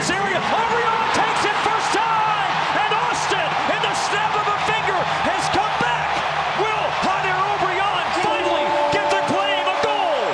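Stadium crowd cheering and yelling just after a goal, a dense, steady mass of many shouting voices. A long held tone comes in near the end.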